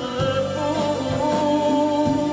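Live band playing a Persian pop song: a man singing long held notes into a microphone over drums and keyboards, the drum beat about two strokes a second.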